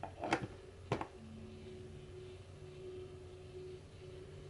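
Plastic seed-sprouter trays being stacked back together: two light plastic clicks about half a second apart as one tray is set down onto another.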